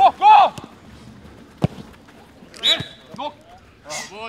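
Footballers shouting during a small-sided training game: a loud high call just after the start and another about two and a half seconds in. Between them comes a single sharp kick of a football.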